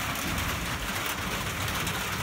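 Steady rain falling on a tin roof overhead, an even hiss with no breaks.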